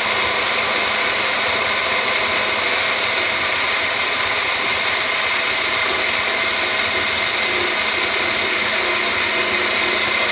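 Magic Bullet personal blender running steadily, its blades churning a fruit-and-yogurt smoothie in the upturned cup: an even whir over a constant low hum.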